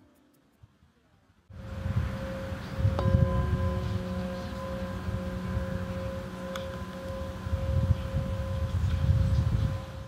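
A metal singing bowl from Nepal played with a mallet, its steady ringing tone slowly wavering, over a low rumble. It begins after a moment of near silence, and a strike about three seconds in adds several higher tones that ring on.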